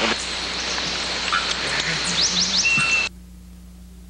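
Outdoor field ambience: a steady hiss with a few quick rising bird chirps and one short whistled note. It cuts off abruptly about three seconds in, leaving only faint tape hiss.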